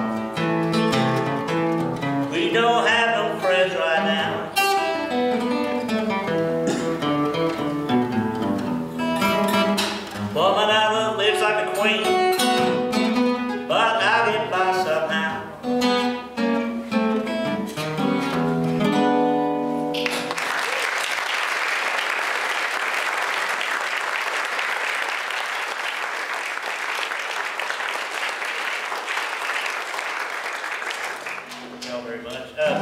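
Acoustic guitar played fingerstyle in Piedmont blues style. The playing stops about two-thirds of the way through, and an audience applauds steadily until near the end.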